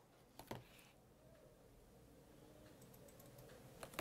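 Near silence: room tone, broken by two faint clicks about half a second in and another sharp click near the end.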